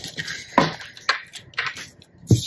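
Cards and small objects handled and set down on a wooden tabletop: three light taps about half a second apart.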